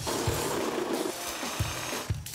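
Construction work noise: a tool running with a few sharp knocks, over background music.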